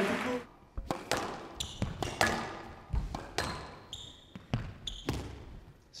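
Squash rally: a series of sharp knocks every half second or so as rackets strike the ball and it smacks off the walls. Short high squeaks come from the players' court shoes on the wooden floor.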